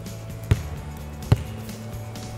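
A basketball bounced twice on a hardwood gym floor, two sharp thuds a little under a second apart, over background music.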